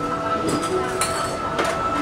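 Busy market ambience: a murmur of voices and scattered clinks and clatter under background music with long held notes.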